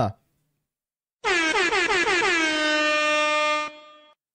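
Air horn sound effect played as a livestream alert for gifted memberships: one blast starting about a second in, pulsing quickly at first, then held at a steady pitch for about two and a half seconds before it cuts off.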